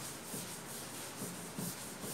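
Blackboard duster rubbing across a chalkboard, wiping off chalk writing: a faint, steady scrubbing.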